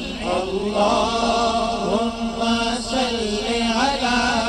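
A group of male voices singing a naat, an Islamic devotional song, through microphones. The sung melody glides and ornaments over a steady low note held underneath.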